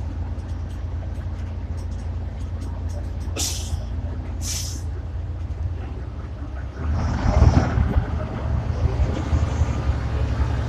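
Inside an Ikarus 435 articulated bus, its diesel engine runs with a steady low drone. Two short, sharp hisses of compressed air from the bus's air system come about three and a half and four and a half seconds in. From about seven seconds in the engine grows louder and rumbles, as when the bus pulls away.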